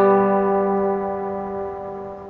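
Acoustic guitar chord in a music track, struck just before and left ringing, slowly fading away.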